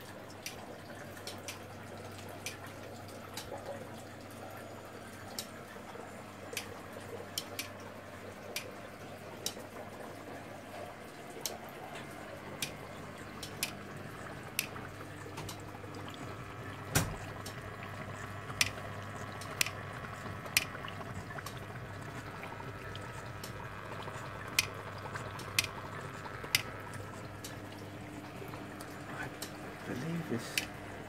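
Water dripping in irregular drops, roughly one a second, a few of them sharper and louder, over a steady low hum.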